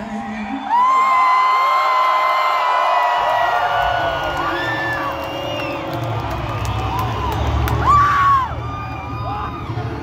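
Concert crowd cheering, screaming and whooping, many voices overlapping, with one loud whoop near the end. A low steady rumble comes in about three seconds in.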